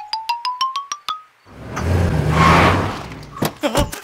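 Cartoon sound effects for a scene change: a quick run of about ten short plucked notes climbing in pitch over about a second, then a swelling whoosh over a low hum that peaks and fades.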